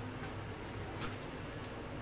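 Room tone: a steady, unbroken high-pitched whine made of two close tones, over a low hum.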